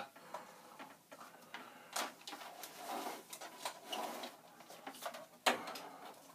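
Cables being unplugged and plastic computer-equipment cases handled on a desk: scattered clicks and rustles, with a sharp knock about five and a half seconds in.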